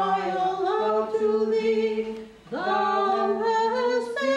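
Unaccompanied voices singing a church hymn in long held notes, with a short break for breath about two and a half seconds in before the next phrase starts.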